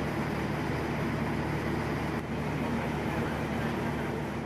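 Steady drone of running drilling-rig machinery: a low hum under a wide, even hiss that holds throughout.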